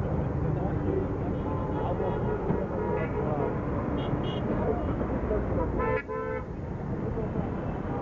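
Busy street traffic: a steady rumble of engines with car horns honking now and then, the clearest horn blast about six seconds in, and voices in the background.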